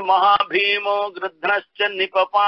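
A man chanting a verse in a sing-song recitation, syllables held on steady pitches with short breaks between phrases.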